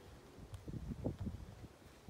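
Low rumble on a handheld phone microphone, with a cluster of soft bumps from about half a second to a second and a half in: wind and handling noise from walking.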